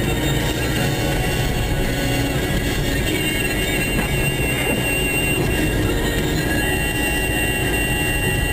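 Steady low rumble of a car driving on a snow-covered road, heard from inside the cabin.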